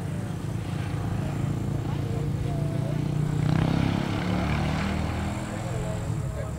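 A low engine drone from a passing motor, swelling to its loudest about halfway through and then easing off.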